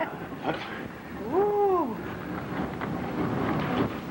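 Carriage of the Bavarian Zugspitze cog railway running, a steady rumble with faint rattles. About a second in, a woman's voice gives one drawn-out wordless "ooh" that rises and then falls in pitch.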